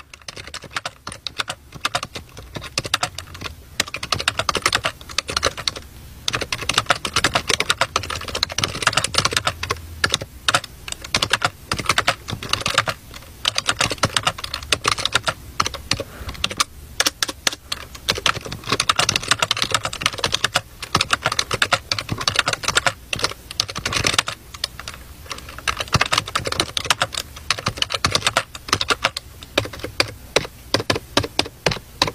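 Rapid, continuous keyboard typing: a dense clatter of key clicks, several a second, broken by a few short pauses.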